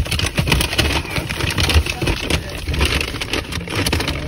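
Steady low rumble of a car's engine heard inside the cabin, with the crackle and clicks of a plastic takeout container and lid being handled.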